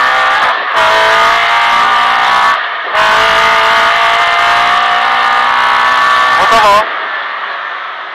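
Rally car engine at high revs, heard from inside the cockpit. The engine sound breaks off briefly twice, about half a second and about two and a half seconds in, and falls away near the end.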